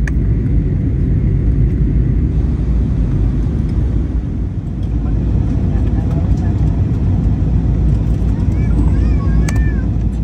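Cabin noise inside an Airbus jet airliner in flight: the steady low rumble of engines and rushing air as the jet descends.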